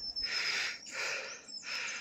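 A person breathing hard through the mouth close to the microphone, three breaths in quick succession.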